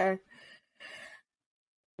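A woman's voice finishing a word, followed by two short, faint breaths in the pause, then silence.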